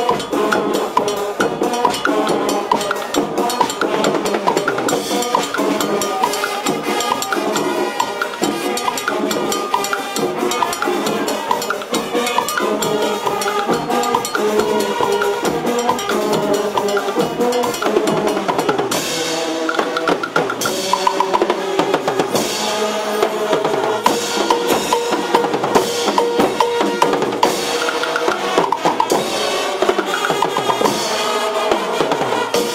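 A Brazilian fanfarra (marching band) playing: horns carrying a melody over snare and bass drums. From about two-thirds of the way through, sharp percussion strikes come to the fore.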